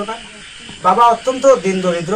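A man speaking in Bengali, a short burst of speech after a brief pause, over a steady background hiss.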